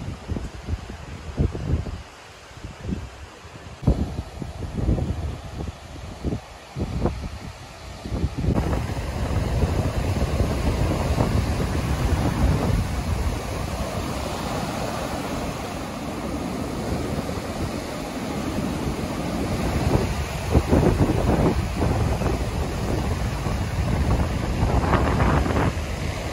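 Wind buffeting the microphone in irregular gusts, then, from about eight seconds in, the steady wash of ocean surf breaking on the beach, with wind gusts on the microphone over it.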